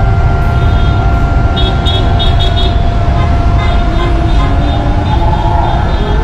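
Loud, steady low rumble of vehicles driving past on a city road, with a steady high tone held throughout and a brief run of quick high pulses about two seconds in.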